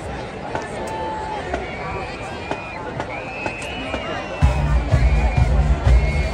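Stadium crowd chatter, then about four and a half seconds in a large combined marching band suddenly starts playing, loud and heavy in the low end with a driving drum beat.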